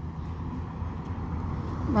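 Street traffic: a car driving past on the road, a steady rush of tyres and engine that grows slightly louder.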